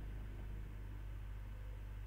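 Steady low electrical hum with a faint hiss: the background noise of the microphone, with no other sound.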